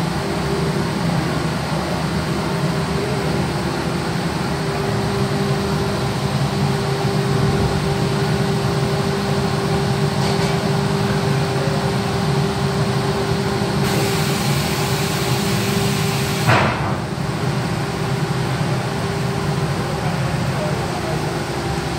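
Automatic glass cutting machine running with a steady mechanical hum. A high hiss joins it a few seconds before a single sharp knock about three-quarters of the way through, after which the hum's steady tone stops.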